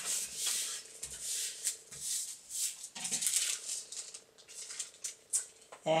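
Crinkly drawing paper rustling and crackling in irregular bursts as the folded sheet is handled and moved about.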